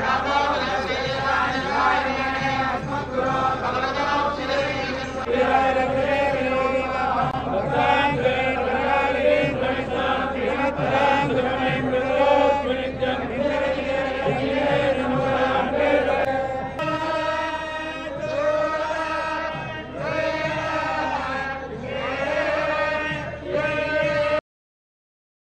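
Many male priests chanting Vedic mantras in unison, a continuous group chant; about two-thirds of the way through it moves into a more sustained, evenly pitched passage.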